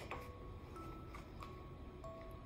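Faint background music of soft single held notes changing pitch every half second or so, with a light paper rustle as a picture-book page is turned at the start.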